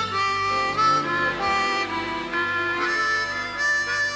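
Harmonica playing a slow melody of held notes, each lasting about half a second to a second.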